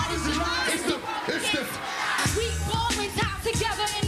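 Live hip-hop/R&B concert music with a heavy bass beat, and a crowd cheering and singing along. The bass drops out for about a second and a half, from just under a second in, then comes back.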